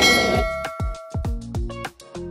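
A bell-like ding sound effect with the subscribe-button animation, ringing and fading over about a second. It runs into background music with a deep, sweeping kick-drum beat and bass notes.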